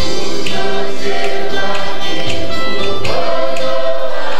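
A choir singing a gospel worship song over a steady percussion beat.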